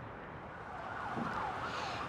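Steady outdoor city background noise, with a faint siren wailing, its pitch sweeping up and down, that grows in from about a second in.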